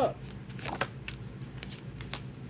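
Handling noise: a handful of short, light clicks spread over two seconds as small objects are moved off camera, over a faint steady low hum.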